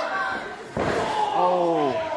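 A single heavy slam of an impact during a wrestling chain match, then a voice calling out that falls in pitch.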